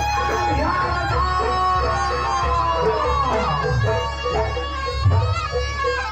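Live jaranan accompaniment music: a reedy shawm-like wind instrument, the slompret, plays a wavering melody with a long held note that bends down about three seconds in, over steady low drum beats.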